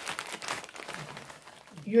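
Crinkling of a plastic Cheez-It snack bag as a hand rummages in it and lifts it, loudest in the first half-second and thinning out over the next second.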